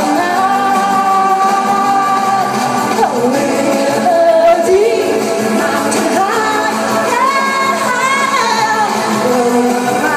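A woman singing a pop song into a handheld microphone over accompanying music, holding long notes and sliding between pitches.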